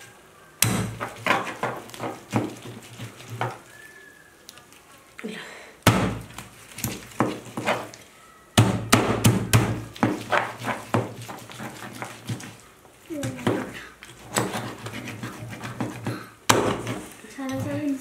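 A knife and a steel fork knocking, scraping and clinking against a plastic cutting board as grilled chicken is cut and torn apart, in bursts of sharp taps with short pauses between.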